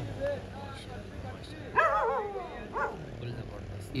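Dogs whining and yelping: a short wavering cry about two seconds in and a briefer one near three seconds.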